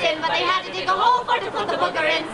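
Several people's voices speaking over one another.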